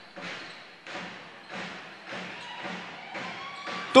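Basketball game court sound during live play: a run of soft thuds, about two to three a second, over the steady background noise of a large hall.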